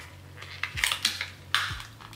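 Thin plastic false-eyelash tray being bent and handled, giving a few short crinkling crackles.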